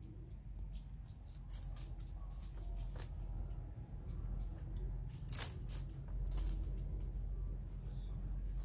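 Short scraping and rustling sounds from a long knife working at the bark of a thick old bougainvillea trunk, the sharpest about five and a half and six and a half seconds in, over a low steady rumble.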